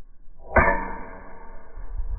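A kick knocking the cap off a glass bottle: a sudden sharp hit about half a second in, followed by a ringing of several steady tones that fades over about a second and a half.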